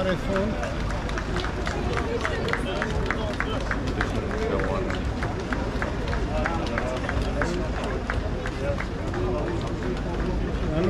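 Boots of a column of marching sailors striking stone paving, a quick, uneven stream of footfalls with the steps out of cadence. Spectators talk over it.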